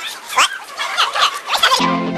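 Voices of a group of people played back speeded up, so their chatter comes out high-pitched and squeaky, with a couple of loud squeals. Near the end the voices cut off and music starts, with a steady low chord and a held high note.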